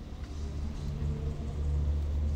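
Low, steady rumbling drone with a deep hum, growing slightly louder, opening the track's soundtrack.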